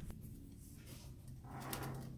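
Faint steady low hum, with one soft click at the start.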